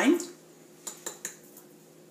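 A spoon clicking against a bowl a few times in quick succession, about a second in, as chopped scallions are tipped into a mixing bowl.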